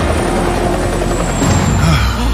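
Helicopter flying low, its rotor beating steadily under a dense rush of engine and blade noise.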